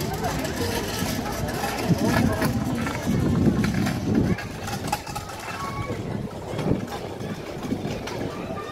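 A person says a word and laughs for a couple of seconds, over a steady outdoor background noise with scattered faint voices.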